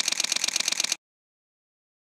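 Camera shutter firing in a rapid burst, as on continuous shooting, stopping abruptly about a second in.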